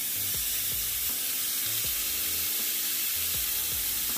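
Seasoned ribeye steak sizzling steadily as it sears in a hot, dry non-stick pan with no oil, its own fat just starting to render.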